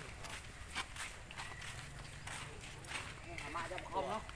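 Faint human voices talking in the background, with scattered small clicks and rustles.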